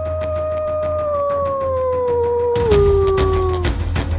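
A wolf howl: one long call that holds, slowly falls, drops lower about three seconds in and then stops, over music with a regular drum beat and deep bass.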